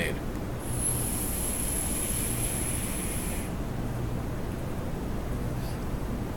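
Electronic cigarette being drawn on: the tank's coil firing gives a steady high-pitched hiss from about half a second in to about three and a half seconds, as the pink lemonade e-liquid is vaporised for a taste.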